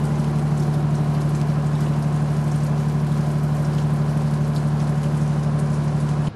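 Steady rain falling, over a constant low mechanical hum.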